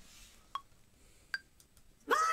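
Software metronome clicking twice, about 0.8 s apart (about 76 beats a minute). Each click is short and sharp with a brief pitched ping, and the second is higher-pitched than the first.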